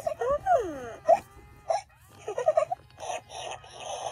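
Short wordless high-pitched voice sounds: brief gliding whines and murmurs broken by pauses, with a soft rustle near the end.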